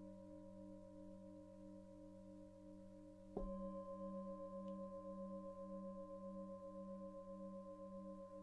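Singing bowl ringing with a slow, pulsing waver in its tone, struck again about three and a half seconds in so that a fresh, louder ring layers over the fading one.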